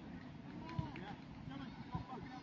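Distant voices of players and spectators calling across an outdoor football pitch, faint and scattered, with two short thumps, one a little before the middle and one at the end.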